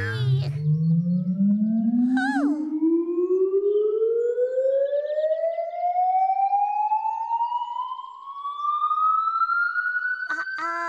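A single long tone that climbs slowly and evenly in pitch from low to high, like a cartoon rising-whistle effect. A short wavering voice cry comes about two seconds in.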